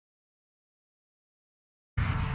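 Dead silence with no sound at all, broken right at the very end by the sudden start of loud, low rumbling background noise.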